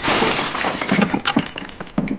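An object smashing on a hard floor: a dense burst of shattering, with fragments clattering and skittering. It thins after about a second and a half to a few scattered clinks.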